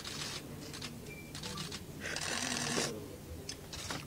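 Camera shutters clicking in rapid bursts, densest about two to three seconds in.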